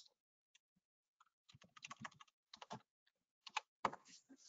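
Faint typing on a computer keyboard: short runs of keystrokes, mostly in the second half.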